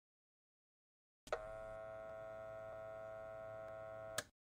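An old television set switching on: a click about a second in, then a steady electrical hum of several held tones lasting about three seconds, ending in another click near the end.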